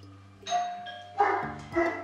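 A doorbell chime rings about half a second in, and then a dog barks twice, about half a second apart.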